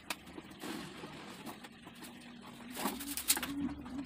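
A bird cooing, a low wavering call that repeats, mostly in the second half. Over it come a few sharp clicks and taps from a steel mesh grille being pressed into a plastic car bumper, with the loudest a little after three seconds in.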